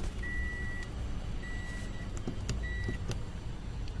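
Car's electronic warning chime beeping three times, a high steady tone about a second apart, with a few faint clicks near the switches.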